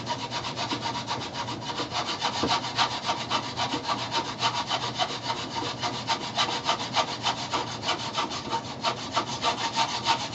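Hacksaw cutting a small wooden block held in a bench vise, with quick, even back-and-forth strokes of the blade rasping through the wood. The strokes grow louder about two seconds in.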